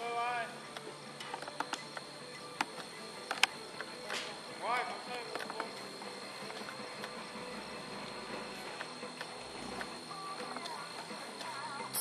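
Faint voices at a distance, in short calls, with a few sharp clicks or knocks and a steady high whine behind them.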